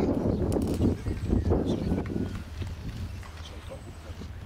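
Wind buffeting the microphone in uneven low gusts, strongest in the first two seconds and then easing off, with indistinct voices beneath.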